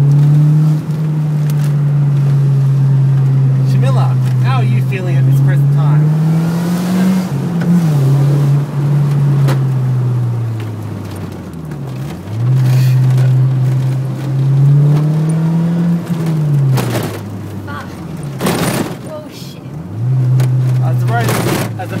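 Toyota MR2 AW11's 1.6-litre four-cylinder engine heard from inside the cabin while being driven. Its note climbs and falls again several times, with sudden drops about twelve seconds in and near the end. Two sharp knocks come in the latter part.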